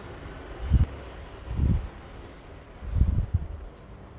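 Low rumbling sound effects: three deep booms about a second apart, the last one doubled, over a steady windy hiss.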